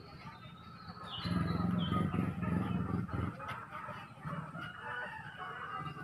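Birds chirping: short, falling high calls repeating every second or so, with voices in the background that grow louder for a couple of seconds after the first second.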